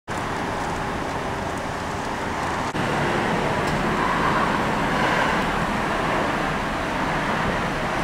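Steady outdoor street noise with traffic, with a brief dip about a third of the way in.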